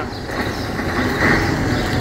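Heavy truck's diesel engine running as the truck starts off, a steady rumble.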